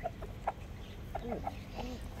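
A rooster giving several short, low clucks spread across about two seconds.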